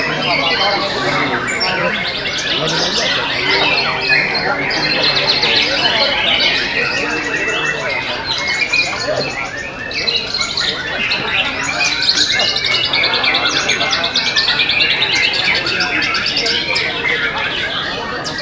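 Many caged white-rumped shamas (murai batu) singing at once: a dense, unbroken chorus of rapid trills and whistles.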